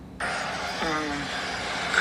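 A recorded police interview starts playing back abruptly a fraction of a second in, with a steady hiss. A few brief, halting bits of speech sound over the hiss.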